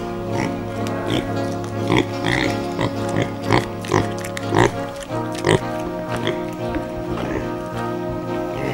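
A domestic piglet grunting repeatedly, the grunts thickest in the middle few seconds, over background music with long held tones.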